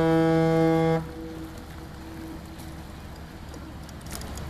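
A ship's horn sounding one long steady blast that cuts off about a second in, a faint tone lingering for about another second. After that only low steady background noise.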